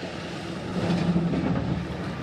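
Street traffic: a motor vehicle passing on a city street, its engine noise swelling toward the middle and easing off again.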